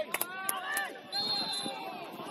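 Players' shouts and calls across an outdoor football pitch, with a sharp knock just after the start. About a second in comes a short, steady, high-pitched referee's whistle blast.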